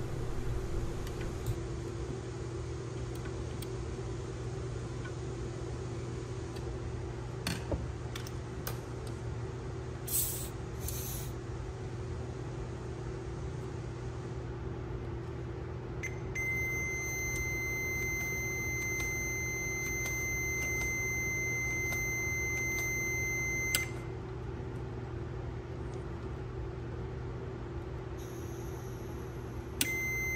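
Steady machine hum of the pump system pressurising, with a few short clicks of handling in the first half. About 16 s in, a steady high electronic beep starts and holds for about eight seconds before cutting off, returning briefly near the end: the continuity beeper of the multimeter wired across the pressure-switch contacts.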